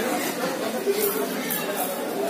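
Indistinct talking and murmured chatter in a large room.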